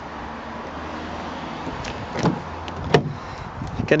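Steady outdoor background noise with a soft knock about two seconds in, then a sharp click near three seconds as the Honda Civic's driver's door is unlatched and swung open.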